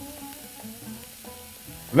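Diced mixed bell peppers sizzling in a frying pan, a soft steady hiss, under quiet background music of held notes.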